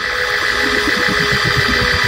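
Church keyboard holding a steady sustained chord, with some low bass notes moving underneath.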